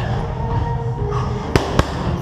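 Two sharp smacks of boxing-glove punches landing in quick succession, about a quarter second apart near the end, over a steady low hum.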